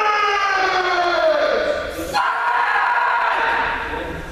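Kendo practitioners giving long, drawn-out kiai shouts, each held for one to two seconds with the pitch sliding slowly down. A fresh shout starts about two seconds in.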